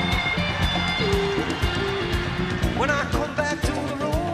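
Live band playing an instrumental passage with no singing: a lead line that holds a note and then slides upward near the end, over steady drums, bass and percussion.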